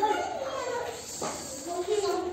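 Young children's voices speaking, high-pitched and overlapping.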